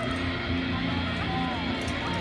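Music with guitar and a steady bass line playing, with crowd voices underneath.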